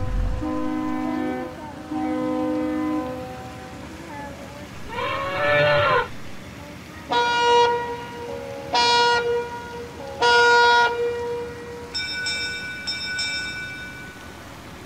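A series of horn-like electronic tones, each held about a second: two near the start, a wavering call rising and falling in pitch in the middle, then three short blasts and a pulsing higher chord near the end.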